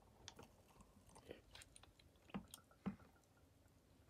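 Near silence: only a few faint, short clicks and taps, the clearest two about halfway through and a little later, as water is poured slowly from a plastic measuring jug into a cup.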